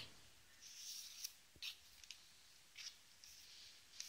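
Faint rustling swishes of a handmade scrapbook album's cardstock pages being handled and turned, with a small tap about a second and a half in.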